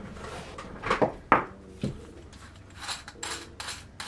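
Metal tools being rummaged through and picked up on a workbench while looking for a screwdriver: a few sharp knocks and clinks about a second in, then a quick run of light rattling near the end.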